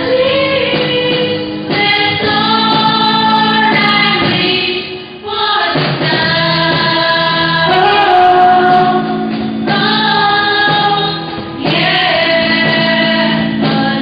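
A small mixed group of school students singing an English song together into microphones, in long held notes in phrases of a couple of seconds, with a brief breath break about five seconds in.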